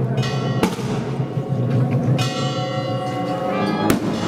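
Church bells ringing in about three strikes over a procession band's low brass and drums playing a slow march.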